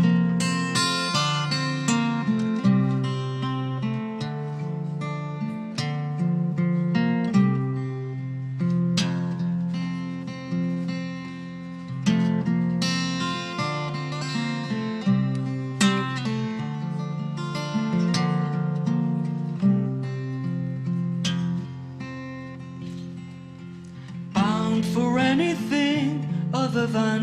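Acoustic guitar picked in a steady pattern with a violin playing over it: the instrumental opening of a live folk-style song.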